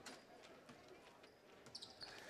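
Near silence in a gym, with a few faint knocks of a basketball being dribbled on the hardwood court.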